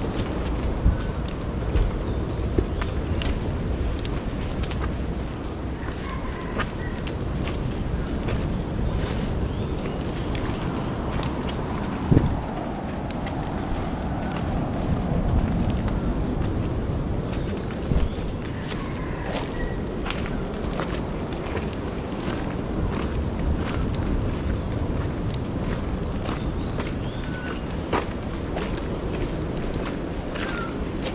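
A hiker's footsteps on a dirt forest trail, heard as scattered knocks and scuffs over a steady low rumble of noise on the microphone, with the sharpest knock about twelve seconds in.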